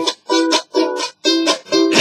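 Ukulele strummed on a D minor chord in short, choppy strokes, about two a second, each cut off sharply with silence between.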